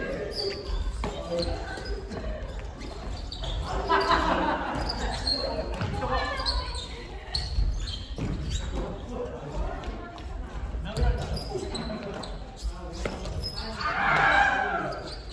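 Badminton doubles rally: repeated sharp racket strikes on the shuttlecock and footfalls on a wooden gym floor, echoing in a large hall.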